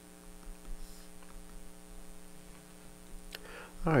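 Steady electrical hum in the recording, with a single faint click near the end.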